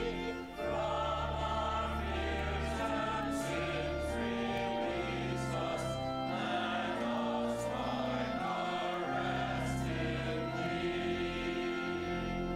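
Church choir and congregation singing a recessional hymn, with long sustained low notes of accompaniment beneath the voices.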